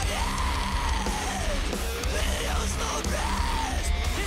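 Metalcore song: a yelled, harsh vocal over distorted electric guitars and bass.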